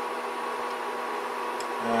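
Steady electrical hum with a faint hiss from the running induction coil setup heating a pot of water, holding a few even tones without change.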